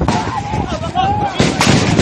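Gunshots cracking close by, sharp separate reports with a loud pair about one and a half seconds in, during a shooting attack.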